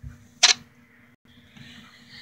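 A single sharp knock about half a second in, from a hand handling the recording device, over a faint steady electrical hum. The sound drops out completely for an instant a little after one second, where the recording is cut.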